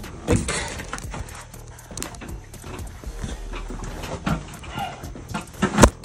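Knocks and rustling as a dirt bike and bathroom scale are handled and positioned, with one loud thump near the end, over background music.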